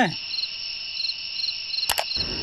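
Crickets chirping: a continuous high trill with a sharper chirp repeating about twice a second. A single sharp click comes shortly before the end.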